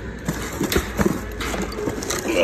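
Cardboard dumbbell boxes and their plastic packaging being handled, with about five short knocks and some rustling.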